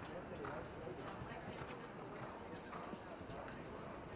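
Hoofbeats of a horse cantering on a grass arena, with indistinct voices in the background.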